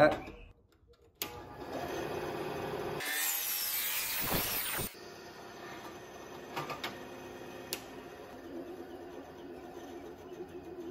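Benchtop bandsaw running and cutting through the wooden handle of an old ball-peen hammer, close to the steel head. It starts about a second in and is loudest for the next few seconds, then runs more quietly, with a few light clicks.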